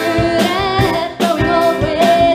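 Live band: a woman sings held, wavering notes over electric guitar and a drum kit, with a short break between phrases just past a second in.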